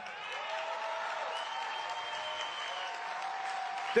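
Large crowd applauding and cheering steadily, with a few held calls sounding over the clapping. The applause answers a pledge to uphold the Second Amendment.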